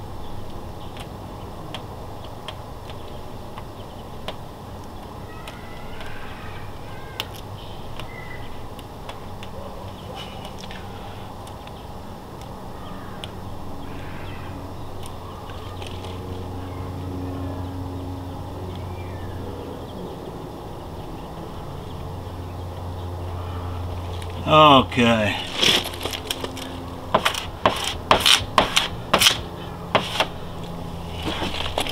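Hand work on a vinyl decal: a plastic squeegee scraping over the decal and its paper backing being handled, heard as a quick run of sharp scratchy clicks and rustles near the end. A steady low hum lies under it, and shortly before the clicks comes a brief falling voice-like sound.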